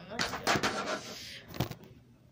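A boy's loud, frustrated groan or growl, rough and wordless, then a sharp knock about a second and a half in.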